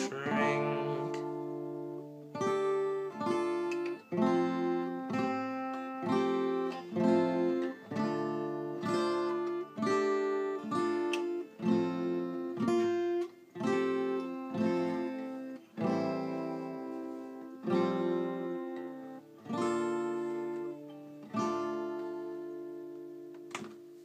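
Acoustic guitar playing instrumental chords without singing, struck about once a second and left to ring. The last chord rings out and fades near the end.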